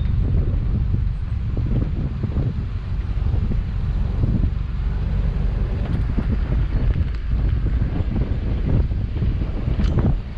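V8 engine of a Baja powerboat running at low speed, a steady low rumble, with wind buffeting the microphone.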